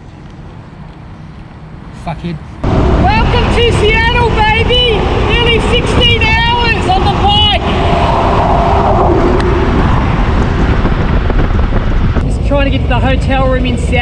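Riding noise of a Harley-Davidson Road King V-twin touring motorcycle at highway speed, a loud steady rush of wind and engine that cuts in suddenly about two and a half seconds in, with a man's voice shouting over it.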